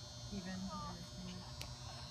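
A voice calling out across an open playing field for about a second, over a steady high-pitched buzz.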